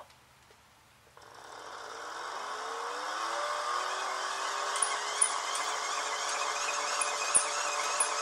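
Hand-cranked megger's generator whirring as it is cranked, starting about a second in and rising in pitch as it comes up to speed, then running steady. It is putting out about 280 volts on its 250-volt range.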